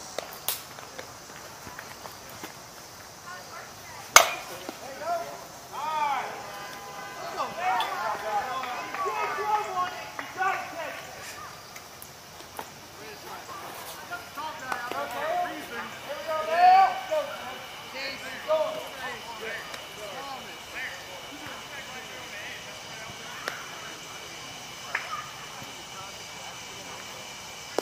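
A single sharp crack of a slowpitch softball bat striking the ball, followed by players calling out and shouting on the field.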